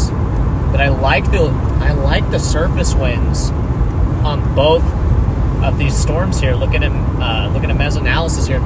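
Steady low road and engine rumble inside a car driving at highway speed, with a voice talking over it.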